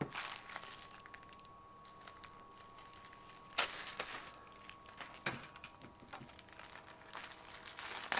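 Plastic postal mailer bag crinkling as it is handled and turned over: a few scattered crackles, the loudest about three and a half seconds in.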